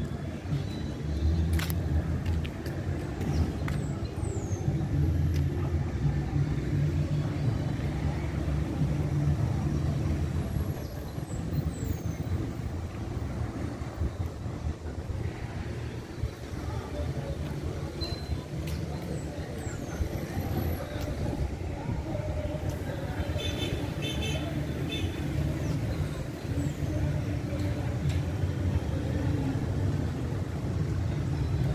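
Neighbourhood street ambience: a steady low rumble of traffic and motor vehicles, with a few short high chirps and faint distant voices.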